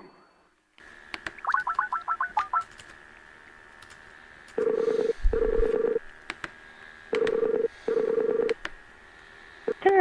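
A phone call being dialed: a quick run of about ten touch-tone keypad beeps, then the ringback tone on the line in two paired rings a couple of seconds apart.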